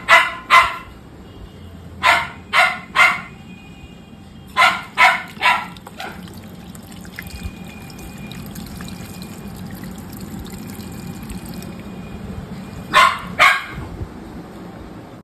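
A dog barking in quick runs of three or four barks, with a long gap before two more barks near the end.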